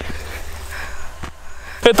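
Quiet open-air background with faint distant voices and a low steady rumble, then a man starts speaking near the end.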